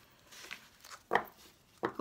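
Playing cards of a cigano (Lenormand) deck being gathered by hand, with faint sliding of card on card and one sharp knock about a second in as the stack meets the tabletop.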